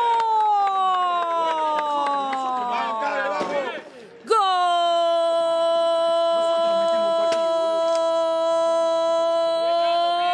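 A football commentator's drawn-out goal cry: a long shout that falls in pitch for about three and a half seconds, a brief breath, then one note held steady for about seven seconds.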